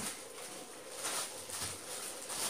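Plastic bag packaging crinkling and rustling as it is picked up and handled, in several irregular crackles.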